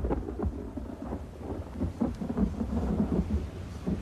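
Thunderstorm ambience: thunder rumbling over steady rain.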